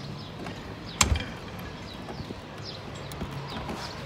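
A door thudding shut once, about a second in, with faint chirps and small clicks around it.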